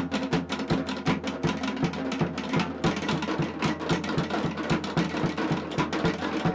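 Tahitian dance drumming: a fast, dense, driving rhythm of sharp wooden strikes over deeper drum beats.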